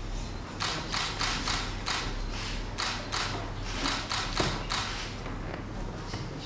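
Scattered hand clapping from a small group, about three claps a second, stopping about five seconds in, over a steady low room hum.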